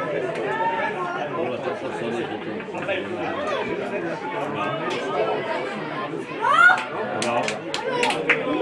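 Many voices talking and calling out over one another, spectators and players at a grass football pitch; no single voice is clear. About six and a half seconds in, one louder shout rises in pitch, followed by a few sharp clicks.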